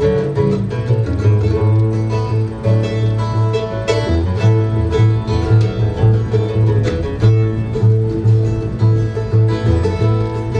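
Live bluegrass instrumental break on mandolin and acoustic guitar, with an upright bass plucking a steady beat underneath.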